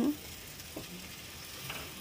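Faint, steady sizzle of flatbread frying on a tawa griddle, with a couple of faint taps as a thick round of dough is set down on the griddle.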